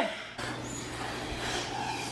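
Faint steady hiss of breath blown through a plastic straw into fluffy slime, inflating a bubble, over a low steady hum.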